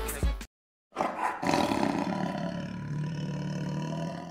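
A tiger's roar, starting about a second in with a loud, harsh onset and settling into a long, low growl that rises slightly in pitch.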